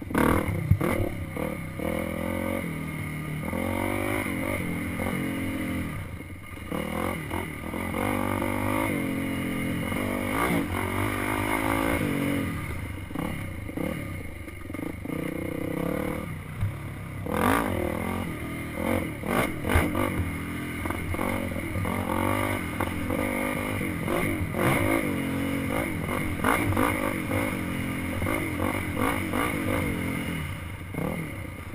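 Dirt bike engine revving up and down over and over as the throttle is worked on a rough trail, with a few sharp knocks from the bike over rough ground.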